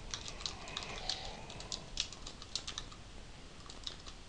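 Typing on a computer keyboard: a fast, irregular run of key clicks as a line of text is entered, easing off briefly near the end.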